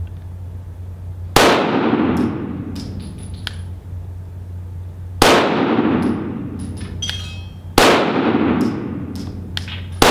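Three slow, aimed shots from a Walther PDP 9mm pistol fired to check its red-dot zero, about four seconds and then two and a half seconds apart. Each shot echoes off the walls of an indoor range and dies away over about a second. Between the shots come light metallic tinks of spent brass casings landing on the floor.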